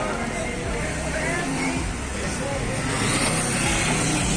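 City street traffic with voices of passers-by, and a motorcycle passing close near the end, when the sound grows louder.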